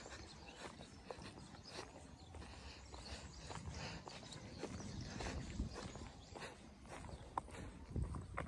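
Footsteps on a concrete road at a steady walking pace, about two steps a second, over a low steady rumble.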